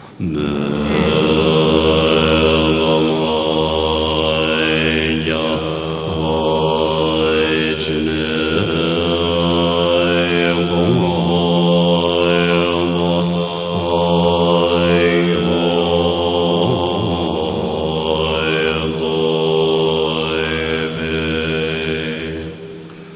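Tibetan Buddhist monks chanting a prayer in unison in deep voices, drawing out long, slowly shifting tones over a low drone.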